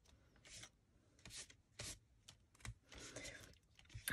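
A Distress ink pad rubbed lightly across embossed cardstock, in a handful of short, faint scraping strokes with a slightly longer one near the end.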